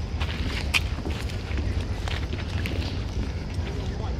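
Footsteps walking on a wooden plank bridge deck, over a steady low wind rumble on the microphone.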